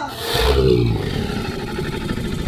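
A T. rex roar sound effect. A deep roar starts about half a second in, slides down in pitch, then carries on as a rougher, lower growl.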